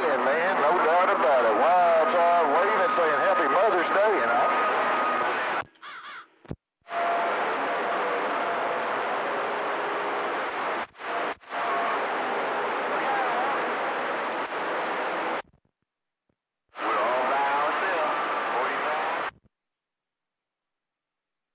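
CB radio receiver picking up weak distant transmissions: a garbled voice through static, then a stretch of hiss with faint steady tones, and a short burst of voice near the end. Each transmission cuts off suddenly as the sender unkeys, and the receiver goes silent when the squelch closes.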